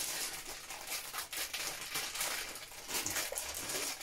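Thin black plastic bags crinkling and rustling as they are handled and opened, with scattered small crackles.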